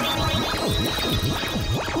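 Electronic music: synthesizer tones swooping up and down in quick repeated arcs over a sustained backing.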